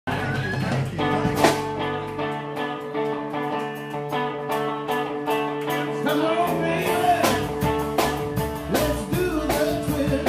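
Live rock-and-roll trio playing: electric guitar, electric bass and drum kit, with a steady drum beat throughout.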